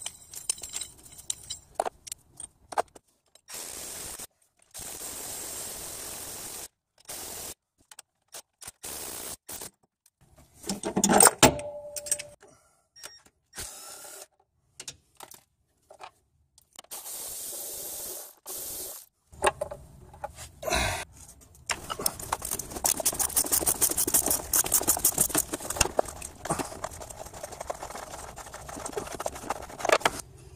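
Metal hand tools clinking, knocking and scraping against engine parts, with scattered stops and starts; a loud knock about a third of the way in, and a fast run of clicks near the end.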